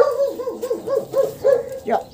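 A puppy yipping in a rapid, even string of high-pitched yips, about five a second, during rough play with another puppy.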